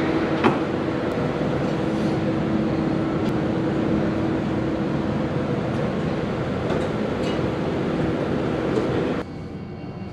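Steady mechanical rumble with a low hum and one sharp click about half a second in, dropping off abruptly near the end.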